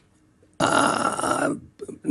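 A man's audible breath lasting about a second, coming after a short silence in a pause in conversation.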